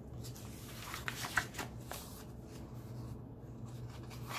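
A page of a paperback comic digest being turned by hand: a paper rustle with a few crisp crackles around the middle.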